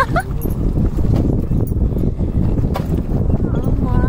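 Wind rumbling on the microphone of a moving motorcycle, with the bike's engine underneath. A short wavering high-pitched sound comes right at the start and another near the end.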